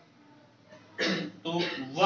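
A man clears his throat once, about a second in, then says a single word.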